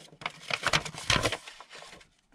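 Paper scraps rustling and crinkling as they are handled and sorted, a quick run of irregular crackles that is loudest about halfway through.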